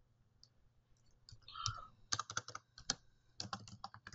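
Computer keyboard typing, a few faint keystrokes in short irregular clusters starting about two seconds in.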